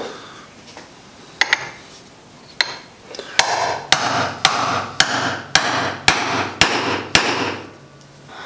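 Hammer striking a circle-cutting chisel to punch a disc out of a silicone rubber spatula: a few light taps, then from about three seconds in a steady run of about eight blows, roughly two a second.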